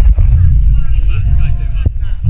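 Loud, continuous low rumble of buffeting on a body-worn action camera's microphone as the wearer moves on the obstacle, with people's voices faintly behind it.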